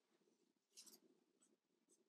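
Near silence, with a faint brief scratch of a felt-tip marker on paper a little under a second in.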